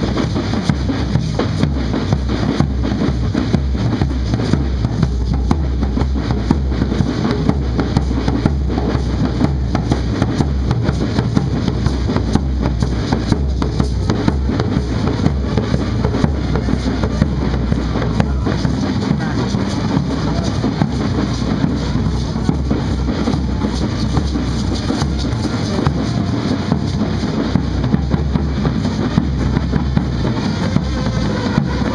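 A large hand-carried bass drum beaten in a steady, repetitive dance rhythm, with the dancers' hand rattles shaking along.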